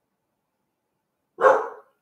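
A pet dog gives one short, loud bark about a second and a half in.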